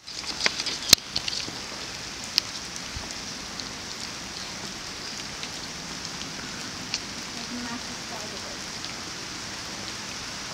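Steady rain falling on foliage and ground, with scattered sharp drop taps, most of them in the first couple of seconds.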